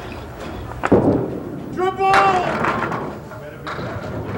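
A candlepin bowling ball is thrown: it lands on the wooden lane with a sharp thud about a second in and rolls toward the pins. Near the end it clatters into the thin candlepins. A voice calls out in between.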